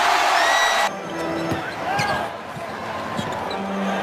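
Arena crowd cheering loudly, cut off abruptly about a second in. A quieter basketball court follows, with a basketball bouncing.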